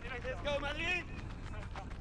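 Speech: a voice talks briefly in the first second, then falls to quieter background sound over the live race broadcast.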